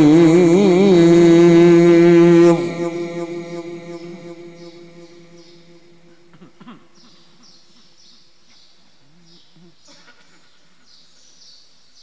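Male Quran reciter holding a long, ornamented note with a wavering vibrato in the mujawwad style, which ends about two and a half seconds in and rings away in the mosque's reverberation. The rest is quiet, with faint murmurs and a run of short, high bird chirps.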